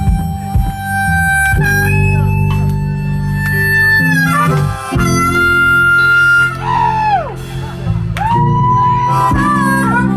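Harmonica solo played cupped against a microphone and amplified, with long held notes and one that bends down in pitch about seven seconds in, over a live band with guitar.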